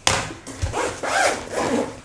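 Zip of a fabric carry bag being pulled closed, a rasping run that starts sharply and carries on with the rustle of the bag's cloth.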